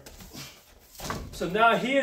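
Soft shuffles and thuds of bare feet on a padded training mat as a kick is set down and the feet reposition, then a man starts talking.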